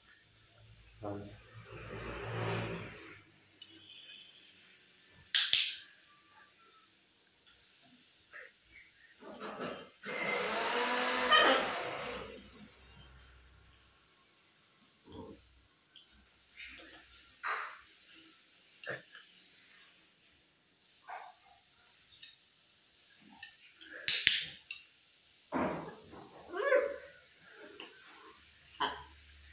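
Blue-and-gold macaw calling now and then: two short, shrill calls, one about five seconds in and one near the end, a longer pitched call lasting about two seconds around the middle, and a few softer short sounds in between.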